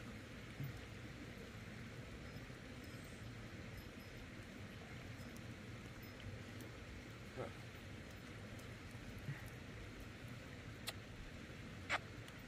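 Quiet, steady outdoor background noise with a few faint clicks scattered through it, the sharpest two near the end, and one short faint higher sound about seven seconds in.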